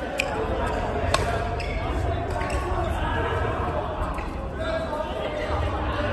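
Badminton rackets striking a shuttlecock: sharp cracks about a fifth of a second in and just over a second in, the second the loudest, with a few fainter hits after, over the steady din and voices of a large echoing sports hall.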